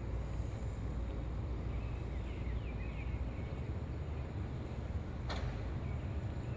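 Steady low outdoor rumble, like wind on the microphone, with a few faint bird chirps about two seconds in and one brief sharp sound about five seconds in.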